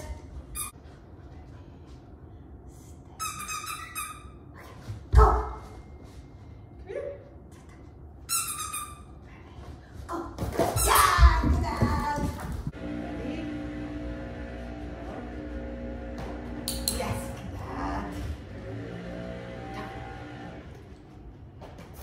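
Play with a small dog: two short runs of high-pitched squeaks, a sharp thump, and a brief louder vocal burst, followed by faint steady tones like background music.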